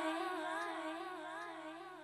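A woman's held sung note with an even vibrato, fading out slowly as the song ends.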